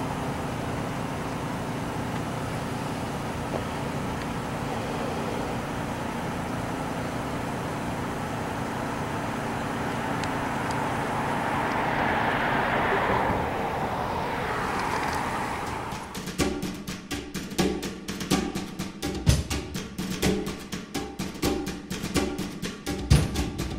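Steady vehicle and street noise with a low engine hum, swelling as a car drives past. Near the end it gives way to music with a sharp drum beat.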